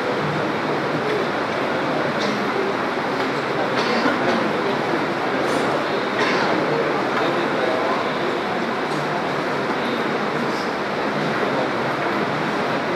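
Steady, dense room noise with an indistinct murmur of voices.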